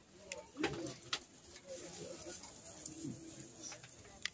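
A dove cooing, with a few sharp clicks and faint murmured voices.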